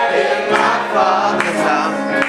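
Gospel choir singing, several voices together in a sustained hymn.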